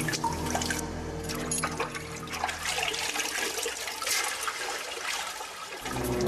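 Water splashing, sloshing and dripping as hands move through shallow water, with scattered small splashes and drips. A low sustained drone underneath fades out about halfway through.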